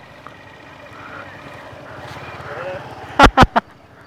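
Motorcycle engine running steadily at low revs, with three short loud thumps on the microphone about three seconds in.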